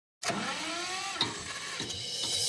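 Intro sound effect of a DJ remix track: a pitched, whirring tone that slowly glides up and then bends down, ending with a short click just over a second in.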